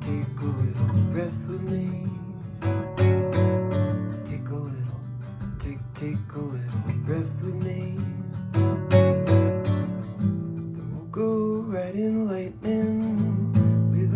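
Nylon-string classical guitar strummed and picked in a steady rhythm, with a man singing over it, most clearly near the end.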